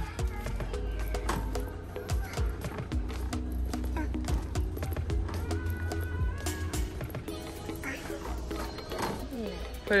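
Background music with a sustained low bass and held notes, over a run of short clicks.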